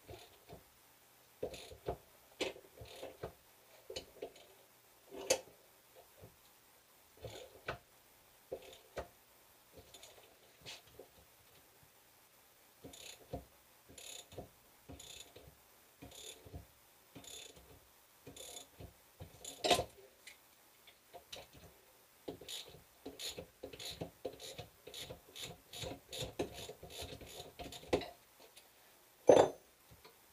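Socket ratchet clicking in short runs while the T55 Torx bolts holding a Corvette C6 rear wheel bearing assembly to its hub are backed out. A few sharper knocks come through, the loudest near the end.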